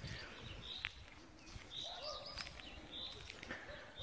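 European starling singing: a faint, varied string of short high whistles and clicks.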